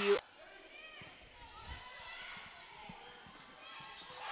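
Faint indoor gym sounds during a volleyball rally: scattered soft thuds from the court, with faint distant voices.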